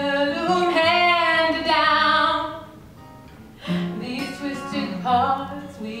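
Live acoustic performance: a woman singing a melodic line over a plucked acoustic guitar. The held phrase fades out about halfway through, and after a short quieter gap the voice comes back in.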